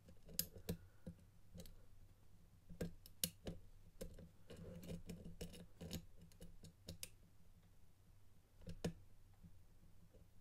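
Faint, irregular clicks and scraping from a hook pick raking and lifting the pins of a pin-tumbler lock held under tension, with a crunchy sound from the serrated pins as they bind and set one by one.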